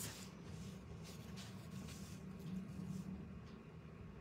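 Faint, soft rustling and rubbing as fingers press and handle a wooden star freshly covered in decoupage tissue, over a low steady room hum.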